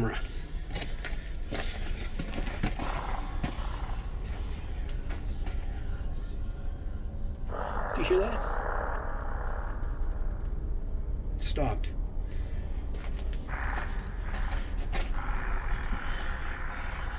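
An unexplained rushing, hiss-like noise in an old mine tunnel. It comes in two stretches, from about seven and a half seconds in to ten, and again near the end, over a steady low rumble and a few sharp clicks. The explorer hearing it says it doesn't sound like wind and almost sounds like snakes.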